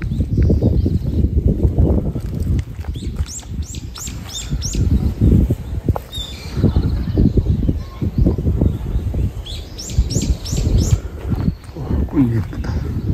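A small songbird singing two phrases of four or five quick, high, descending whistles, the second about six seconds after the first, over a loud, uneven low rumble.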